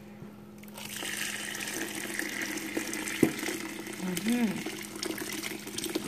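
Dark red liquid poured steadily from a pot onto dry rice grains in a bowl. The pour starts about a second in and goes on as the bowl fills, with a single light click partway through.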